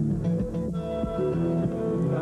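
Steel-string acoustic guitar played live, plucked notes ringing over sustained low notes in an instrumental passage with no singing.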